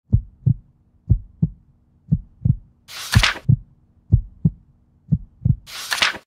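Heartbeat sound effect: six double thumps, lub-dub, about one a second, over a faint steady hum. A loud whoosh cuts in about three seconds in and another at the end.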